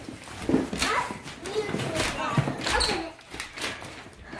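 Indistinct voices and short, high vocal sounds, over knocks and rustles of cardboard boxes and wrapping paper being handled.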